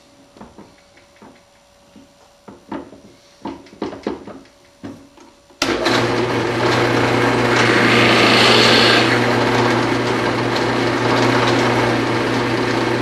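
A few light knocks of a wooden block being positioned, then a drill press motor starts suddenly about halfway through and runs with a steady hum. A second or two later a one-inch Forstner bit briefly bores a shallow recess into a block of oak.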